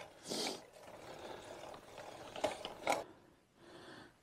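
Gravel bike coasting on a dirt track, with the rear freehub ticking faintly. The sound cuts out completely for a moment about three seconds in.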